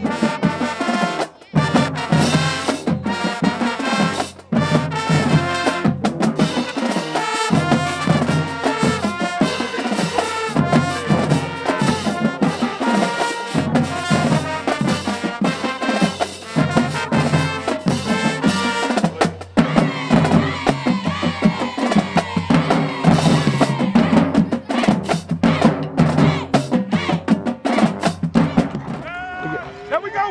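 High school band playing brass and drums in a steady, upbeat dance beat, with trumpets and other horns over the percussion.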